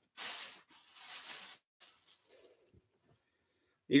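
Rustling of a bag and T-shirt fabric as a shirt is dug out of a bulk bag of clothes. A louder rustle lasts about a second and a half, followed by a briefer, fainter one.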